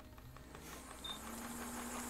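Handheld hot-air heat gun starting up: its fan motor comes on and a faint steady hum with a rush of air builds gradually from about half a second in.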